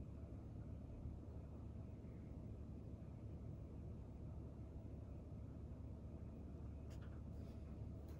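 Quiet room tone with a steady low hum; a couple of faint short clicks near the end.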